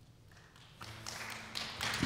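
Near silence, then faint room sound comes up about a second in, with a few light taps near the end.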